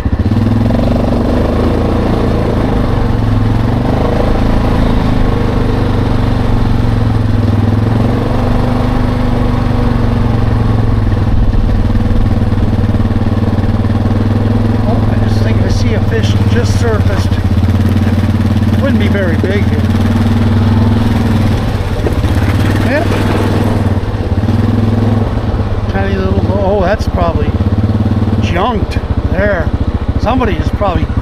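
ATV engine running steadily at an even, low pitch. Brief high chirps sound over it in the second half.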